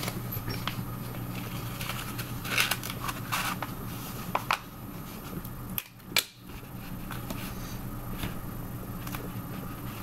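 A sheet of paper being handled and rolled into a tube on a table, with irregular rustling and crinkling and small clicks, over a steady low hum. The sound drops out briefly just after the middle.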